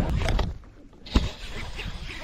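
Low rumble of wind on the microphone over open water, dropping away about half a second in, then a single sharp knock against the boat a little past the middle.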